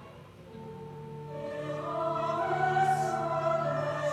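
Recorded classical backing track with choir, played in for an aria: held choral and orchestral chords swelling up from quiet over the first two seconds, then sustained.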